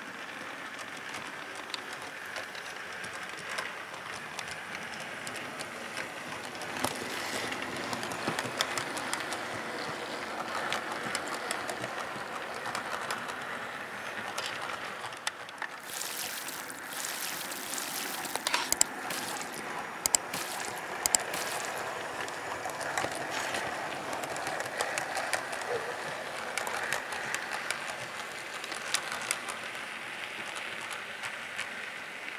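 An OO gauge model train running along the track: a steady whir from the locomotive's motor and wheels, with fine clicking as the wheels pass over rail joints and points. About halfway through there is a brief stretch of handling noise with several sharp clicks.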